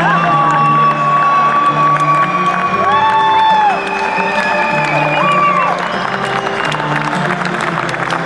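Rock band playing live, with long held high notes that slide up into each note and fall away at its end, over steady bass notes. Crowd cheering and applause run underneath.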